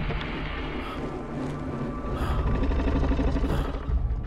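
Dark trailer score and sound design: a dense, noisy layer over a heavy low rumble that swells and grows louder in the second half.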